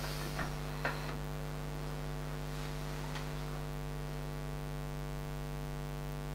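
Steady electrical mains hum, buzzy with a stack of overtones and unchanging in pitch or level. Two faint clicks come in the first second.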